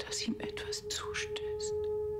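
Whispered dialogue from a TV drama over one steady, held drone note in the score.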